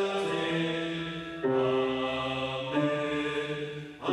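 Slow hymn singing: voices holding each note for about a second and a half before moving to the next, with a brief dip in level near the end as a phrase closes.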